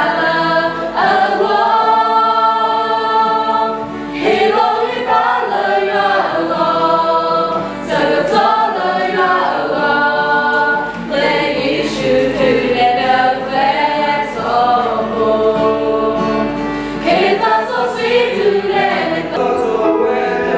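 A mixed choir of men's and women's voices singing a hymn, with held notes in phrases and short breaks between them.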